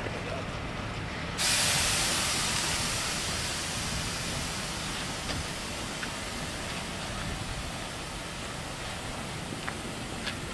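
FS Class 625 steam locomotive 625.100 letting off steam: a loud hiss starts suddenly about a second and a half in and slowly dies away, over the low rumble of the train rolling slowly along the yard track, with a few faint clicks.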